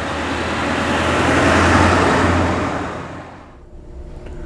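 A road vehicle passing by: the noise swells to a peak about two seconds in, then fades away.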